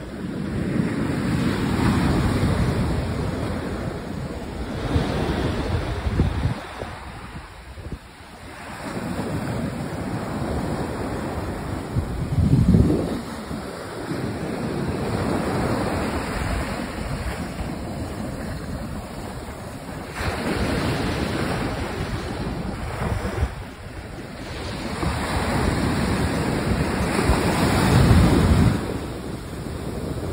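Ocean surf breaking and washing up a sandy shore in swells every few seconds, with wind buffeting the microphone in gusts, strongest about halfway through and near the end.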